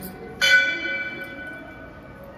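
Metal temple bell struck once, about half a second in, ringing with several clear high tones that fade away over about a second and a half.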